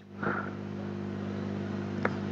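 Steady low electrical hum under a background hiss, with a single soft click near the end.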